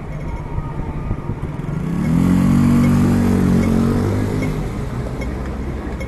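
A motor vehicle's engine passing close by on a city street, swelling to a peak about two to three seconds in and fading out, its pitch bending as it goes, over a steady rumble of traffic.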